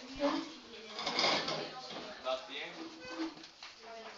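A man's voice muttering quietly and indistinctly in short fragments, much softer than normal talk, with short pauses between them.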